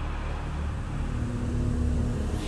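Low, steady rumble from a fantasy TV series' soundtrack, with a faint held note coming in about halfway through.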